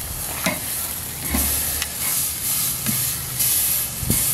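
T-bone steak sizzling on the grate of a charcoal kamado grill: a steady crackling hiss that swells and fades, with a few faint clicks.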